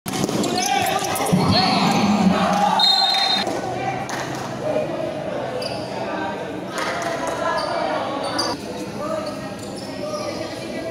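Basketball game in an echoing gym: players and onlookers shouting and talking, with the ball bouncing on the court. About three seconds in there is a short, high, steady blast of the referee's whistle, and later there are brief sneaker squeaks.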